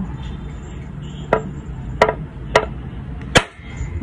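A bolo knife striking a whole coconut's hard shell four times, each a sharp crack, about half a second to a second apart, the last the loudest. The knife is aimed along one of the coconut's ridge lines to split it open, and the last blow lands off-centre.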